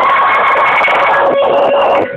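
A man belting a long held note into a karaoke microphone, loud and harsh with distortion; the note steps down in pitch about a second in.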